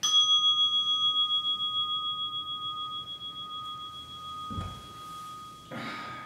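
A meditation bell struck once, ringing out with two clear tones that fade slowly and waver as they decay, signalling the end of the sitting period. Cloth rustles and a soft thump come about four and a half seconds in and again near the end as the meditator moves.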